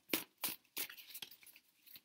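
A tarot deck being shuffled by hand: a few quick, soft card slaps and riffles, fainter toward the end.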